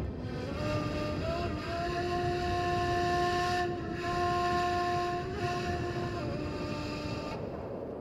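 Strong wind howling, a rushing noise with a steady whistle-like tone held at nearly one pitch, which steps up slightly in the first second or so.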